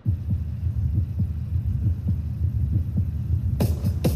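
Opening of the routine's backing music, starting suddenly with a deep, throbbing bass pulse. Brighter, higher sounds come in near the end as the track builds.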